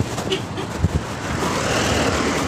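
Road and wind noise from a moving vehicle, with a few low thumps from the phone being handled. The rushing noise swells in the second half.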